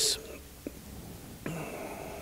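The end of a man's sentence, then a pause: quiet room tone in a hall, with a small click and a faint voice-like sound about a second and a half in.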